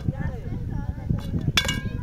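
A single sharp clink of metal or glass about a second and a half in, ringing briefly, over a low outdoor rumble.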